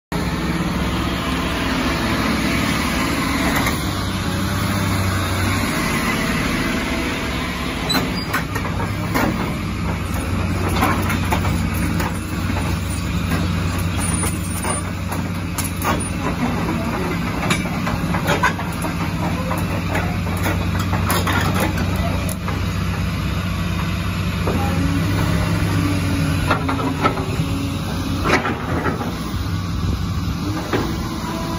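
Caterpillar hydraulic crawler excavator's diesel engine running steadily, with scattered short clanks and knocks.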